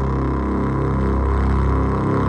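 Korg Volca Keys synthesizer played through an Iron Ether FrantaBit bit-crusher pedal: a steady, low, buzzy drone with many overtones.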